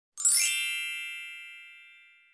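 A single bright chime struck about a quarter second in, ringing with many high tones and fading out over about two seconds: an intro ding sound effect.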